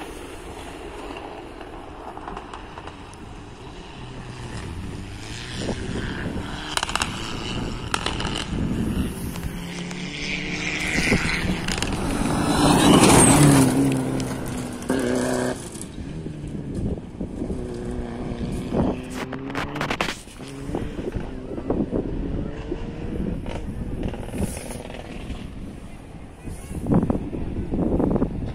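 Rally car on a gravel special stage, its engine getting louder as it approaches, passing loudest about half way through, then fading as it pulls away, the engine note rising and falling with gear changes.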